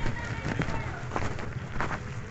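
Footsteps of a person walking on a dirt road, about two steps a second, over a steady low rumble on the phone's microphone.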